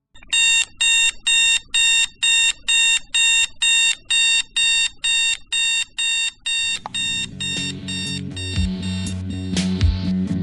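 An electronic alarm clock beeping in a steady rapid rhythm, about two and a half beeps a second. About two-thirds of the way in the beeps fade as band music with guitar and drums rises over them.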